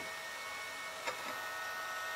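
Small cooling fan running while resting on the metal hard-drive housing of a Fostex D1624 recorder: a steady whine of several high tones, with a light click about a second in. This is the racket of the fan's vibration resonating through the drive box.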